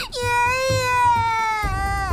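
A young girl crying out "Grandpa!" (爷爷) in one long, high, tearful wail that sinks slightly in pitch toward the end.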